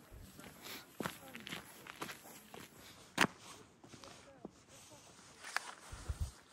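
Footsteps on a paved path: a few irregular steps, the sharpest about three seconds in, with faint voices in the background.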